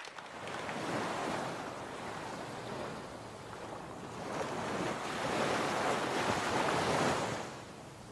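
Sea waves washing in and drawing back: two swells, the second louder, dying away near the end.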